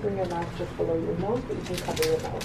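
Indistinct, muffled talking by a soft voice, with no words that can be made out.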